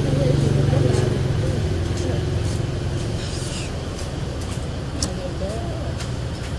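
Low engine rumble of a passing vehicle, loudest at first and fading over the first few seconds, under quiet voices. There is a single sharp clink of a utensil on a dish about five seconds in.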